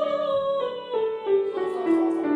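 Classical singing voice with vibrato, accompanied by chords on a grand piano. The vocal line steps down through a phrase of held notes.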